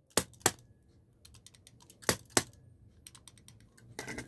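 Brass padlock being handled, giving sharp metallic clicks: two pairs of clicks, one near the start and one about halfway through, with lighter ticks in between.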